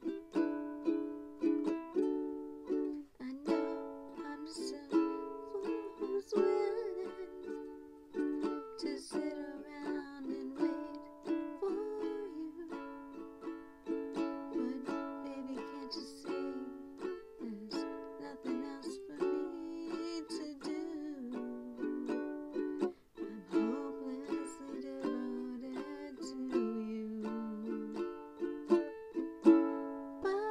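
Ukulele strummed in a steady rhythm of chords.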